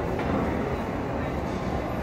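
Steady, even rumbling background noise of a large indoor space, with no distinct events standing out.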